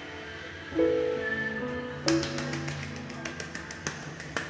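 Instrumental backing track of a slow Korean pop ballad playing through a break in the vocal, with held chords. From about halfway a quick, uneven run of light clicks and taps joins in.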